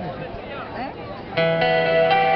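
Voices talking over the stage sound, then about a second and a half in a live band's amplified guitar chord comes in loudly and rings on as the song starts.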